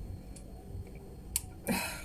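Lightweight aluminium camera tripod being handled: a faint click, then one sharp click a little over a second in as a leg or leg clamp is worked, then a short breathy sound near the end.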